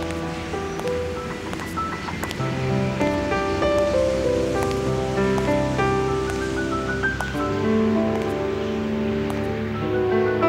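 Slow background music: sustained chords that change every second or two over a low, held bass line, with a faint steady rush beneath.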